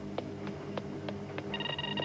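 Electronic soundtrack: a steady low synthesizer drone with regular sharp ticks, about three a second, joined about three-quarters of the way through by steady high electronic tones.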